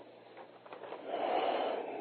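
A person's breathy sound, like a long sigh or drawn-out exhale, rising about half a second in and held for about a second.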